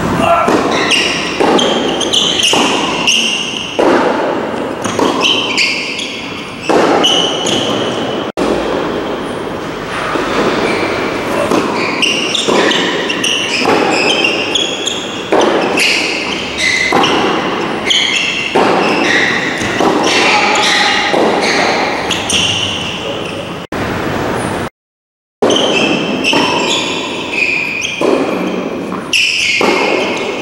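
Tennis rally in an indoor hall: repeated racquet strikes and ball bounces on a hard court, each echoing in the hall. The sound cuts out briefly about five seconds before the end.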